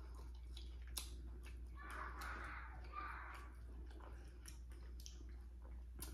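A person chewing food softly, with a few small clicks about one and three seconds in.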